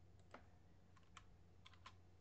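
Faint computer keyboard keystrokes, several short clicks spread irregularly, over a low steady hum.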